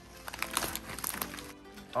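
Background music, with about a second of crisp crackling and crunching shortly after the start from the bag of snacks being handled and eaten.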